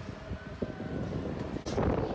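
Wind rushing and buffeting over the microphone while riding a spinning chair-swing ride, with a louder gust near the end.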